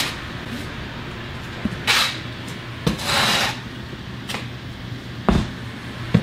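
Plastic box liner rustling twice and a few dull thuds as packages are handled into a cardboard shipping box, the loudest thud near the end, over a steady low hum.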